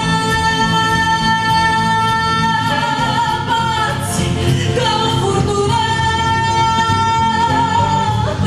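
A woman singing a light-music (Romanian pop) song with live band accompaniment. She holds two long notes, the second starting about four seconds in.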